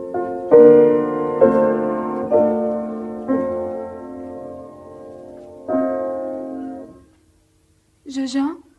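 Piano playing a slow tune in struck chords, each left to ring and fade, with a pause before a last chord that dies away about seven seconds in.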